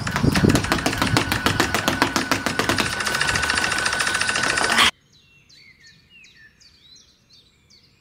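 A fast, even patter of sneaker footfalls on hard ground, about ten a second, from a quick-feet running drill; it cuts off suddenly about five seconds in. Faint bird chirps follow.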